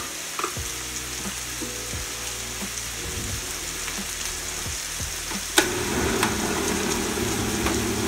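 Beef frying in a pan, a steady sizzle; a sharp click about five and a half seconds in, after which the sizzle is louder.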